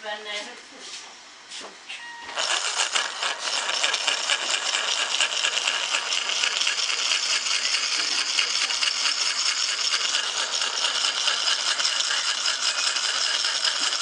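Electric drive motor and gears of a homemade garden-railway locomotive chassis, fitted with LGB wheels, start up suddenly about two seconds in and then run with a steady, dense mechanical rattle. The running is a bit wobbly.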